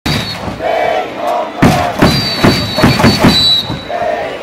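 Baseball stadium cheering: crowd voices, then a run of loud thumping beats from about one and a half seconds in, with a thin high steady tone over them.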